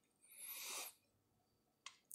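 Near silence, with a faint breath of about half a second early on and a small mouth click just before speech starts again.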